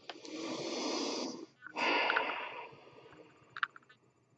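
A man breathing out heavily twice: a long exhale of about a second and a half, then a shorter one. A couple of faint clicks follow near the end.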